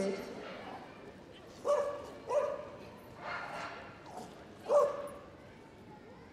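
Staffordshire bull terrier barking in excitement as she runs an agility course: four short, sharp barks spread over about three seconds.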